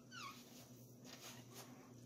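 A door hinge squeaking as a door is pushed open: one short, faint, high squeal falling in pitch right at the start, then near silence with a couple of faint ticks.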